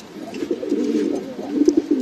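Frillback pigeon cooing: one low, wavering coo that swells in shortly after the start and fades near the end.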